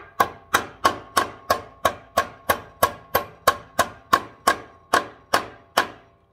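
Hammer tapping a metal steering block onto the steering shaft under a 1956 Wheel Horse RJ35 garden tractor's frame, metal on metal. About nineteen even blows, roughly three a second, each ringing, loud enough to "hurt your ears".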